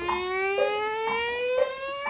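A 1936 dance-band fox trot played from a 78 rpm record: one instrument holds a note that slides slowly upward, with short chords from the band on the beat about twice a second.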